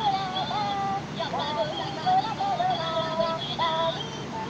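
Gemmy Christmas Happy Shuffler Minion toys singing a Christmas song in high-pitched voices over music, heard through a TV's speakers.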